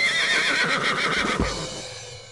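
A high, quavering whinny that rises at its start, trembles for about a second and a half and then fades out.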